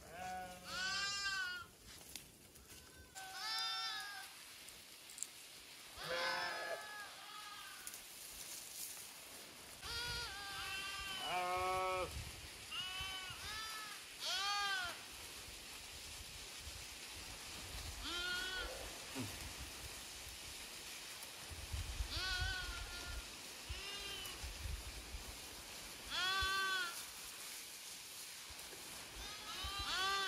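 A flock of sheep bleating, a dozen or so calls from different animals every couple of seconds, each call rising and falling in pitch.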